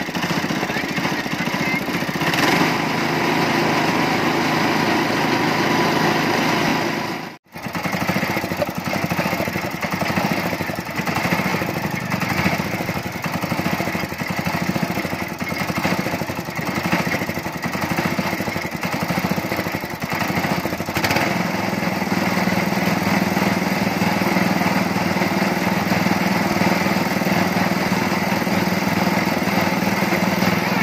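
Small engine running steadily, driving a roller sugarcane juice crusher as cane stalks are fed through. The sound cuts out abruptly for a moment about seven seconds in, and a steadier low hum comes in about two-thirds of the way through.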